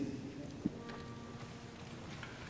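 A congregation sitting down: shuffling feet, rustling and chairs taking people's weight, with one sharp knock about two-thirds of a second in.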